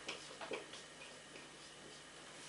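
Faint taps and short squeaks of a marker pen writing on a whiteboard, mostly in the first second.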